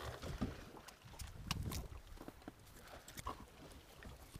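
Scattered clicks, rustles and a few low bumps of handling and movement in a grass-covered duck blind.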